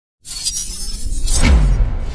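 Produced intro sound effect: a burst of noise starting just after the opening silence and building to a heavy crash with a falling low boom about one and a half seconds in, running into sustained dark intro music.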